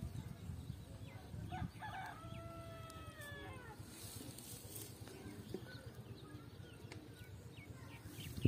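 One faint, long animal call about two seconds in, held for about a second and a half and falling slightly at its end, over a low rustle of the cast net being handled.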